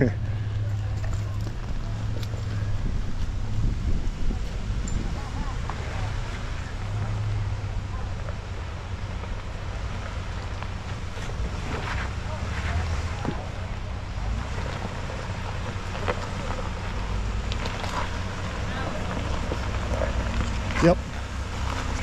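A Jeep Wrangler's engine running low and steady as it creeps over rocks, with wind on the microphone.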